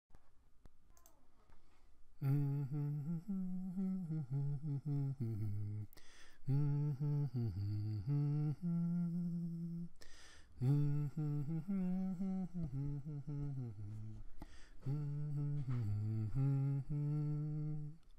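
A man's voice humming a slow melody with no accompaniment, in four phrases with short breaths between them. It is the wordless intro of a home-made soccer anthem.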